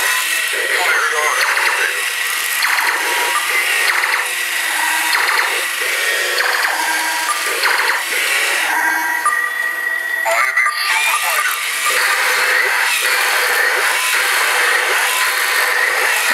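Battery-powered walking toy robots playing their built-in electronic sound effects, music and voice phrases through small speakers, over the clicking of their geared walking mechanisms.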